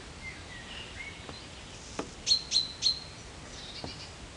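A small bird chirping outdoors: three quick high chirps a little past the middle, with fainter calls earlier. A single sharp click about halfway through.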